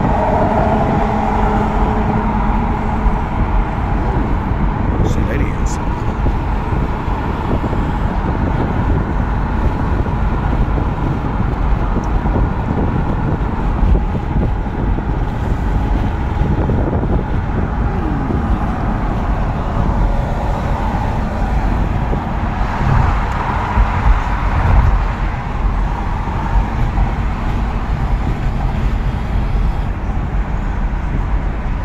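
Road noise inside a car cruising at highway speed: a steady rumble of tyres and engine.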